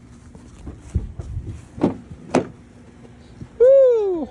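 Two sharp knocks about two seconds in, then near the end a high-pitched voice calls out once, its pitch rising slightly and then falling, about half a second long.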